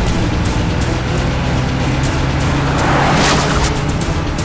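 A car driving along a dirt track, its engine running under dramatic background music, with a rushing noise that swells and fades about three seconds in.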